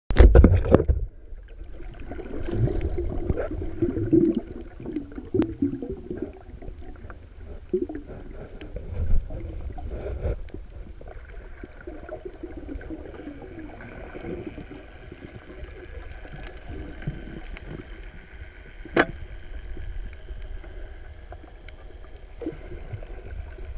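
Muffled underwater noise heard through a submerged camera: low rumble and water movement with scattered clicks. It is loudest in the first second, and there is one sharp click about nineteen seconds in.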